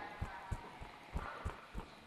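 Footsteps of a player moving at a brisk pace, heard as low, evenly spaced thumps about three a second.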